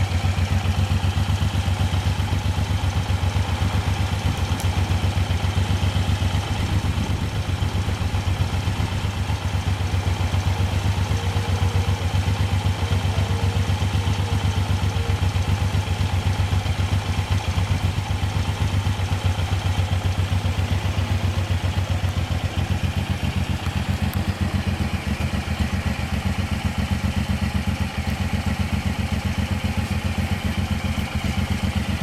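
2008 Suzuki Boulevard M109R's 1783 cc V-twin idling steadily, with an even exhaust pulse.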